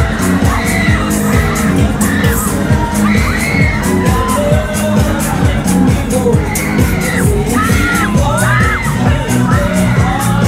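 A fairground ride's sound system playing loud dance music with a steady beat, with riders shouting and cheering over it.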